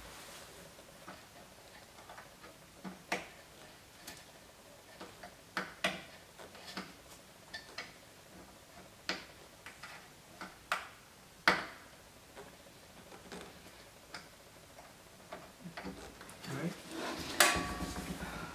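Scattered light clicks and taps, irregular and a second or two apart, from pushing a ground wire's terminal into the plastic harness connector of a headlight. A louder rustle of handling comes near the end.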